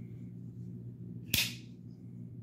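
A single sharp click with a brief metallic ring about a second and a half in, from a folding knife being handled. A faint steady low hum runs underneath.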